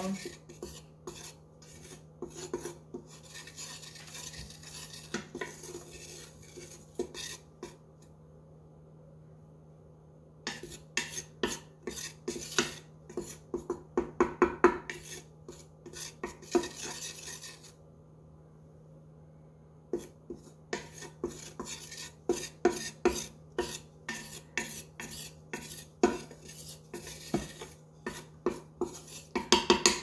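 A wooden spatula scraping and stirring dry flour around the bottom of a hot stainless-steel Instant Pot inner pot in quick, repeated strokes, dry-toasting the flour for a roux. The stirring stops briefly twice, about a third of the way in and again just past the middle, over a faint steady low hum.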